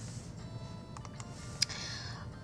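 Quiet room tone with a few light clicks about a second in and one sharper click near the end.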